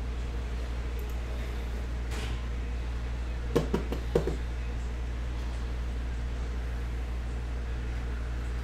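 A steady low hum, with a few short, sharp knocks or clicks about three and a half to four and a half seconds in.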